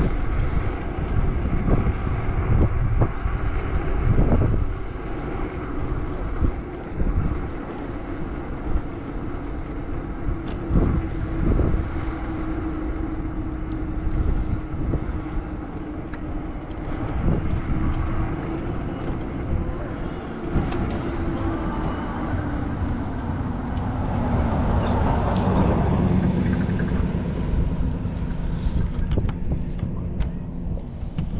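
Wind buffeting the microphone of a moving bicycle, with low rumbling and uneven thumps. Under it runs a steady engine hum that drops slightly in pitch after the middle. A louder vehicle sound swells and fades about three quarters of the way through.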